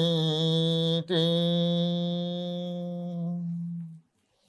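A Buddhist monk chanting a Pali verse on one long, steady held note, with a brief break about a second in, then a second drawn-out note that fades and stops near the end.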